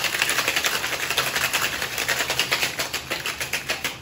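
Boston shaker with ice and water being shaken hard: ice rattling against the metal tin in a fast, even rhythm. The ice is partly broken down, so the hard clatter is turning wetter, toward a slushy sound, the sign that the shake is nearing its finish.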